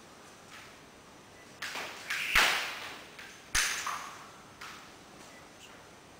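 Jump rope whipping round and slapping the floor mat in a few irregular strokes, the two loudest about a second apart in the middle.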